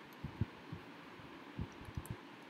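Stylus writing on a tablet: a few faint, soft low thumps at uneven intervals over a steady hiss.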